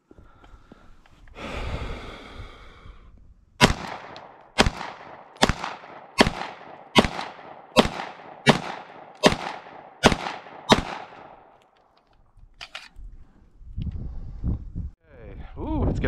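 CZ SP-01 Tactical pistol firing ten shots in a slow, steady string, about one shot every 0.8 seconds, each a sharp report with a short tail.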